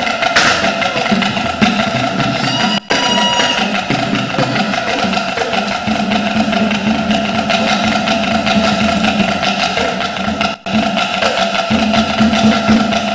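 Traditional drum and percussion music playing steadily, with many quick strikes. It cuts out for an instant twice.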